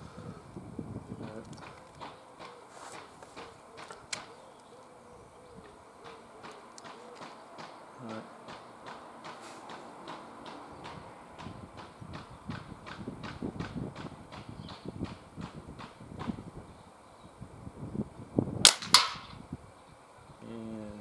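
A .22 Diana Mauser K98 underlever spring-piston air rifle fires near the end, with a sharp crack followed about a third of a second later by a second crack as the pellet strikes at the target, knocking a paintball off its golf tee.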